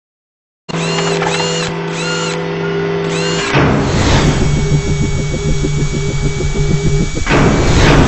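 Synthesized intro sting for an animated logo. It starts just under a second in with a steady electronic hum and chirping beeps about twice a second. A whoosh comes about three and a half seconds in, then a fast, machine-like whirring pulse about five times a second, and a second whoosh near the end.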